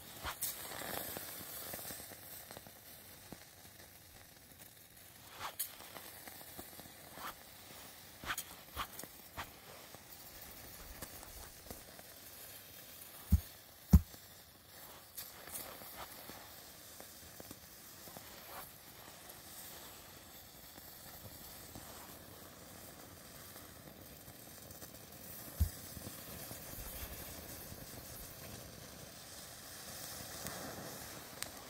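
Saltpeter-and-sugar mixture burning in a foil packet on dry grass, hissing steadily with crackling and scattered sharp pops. Two loud low thumps come close together a little after halfway, and a softer one near the end.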